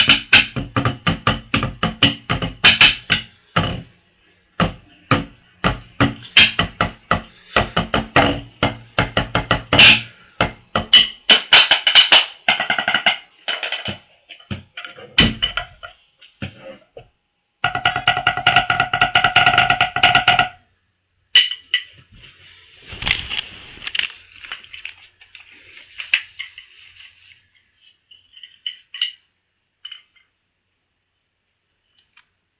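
Drumsticks playing a fast tenor solo on a rubber tenor practice pad: dense runs of sharp taps broken by short pauses, thinning to a few scattered strokes over the last several seconds.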